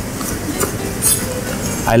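A chef's knife chopping blanched dill on a plastic cutting board: a few separate soft knife strikes against the board.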